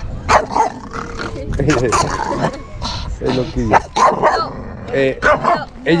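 A dog barking and yipping in a series of short, sharp calls, with people's voices around it.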